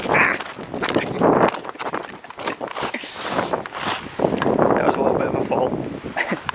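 Footsteps crunching over beach shingle and loose stones, an uneven run of steps.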